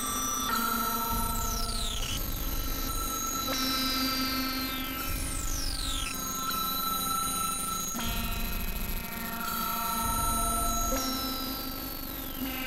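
Experimental synthesizer drone: layered sustained tones with high-pitched glides that sweep downward every few seconds, over a rumbling low pulse.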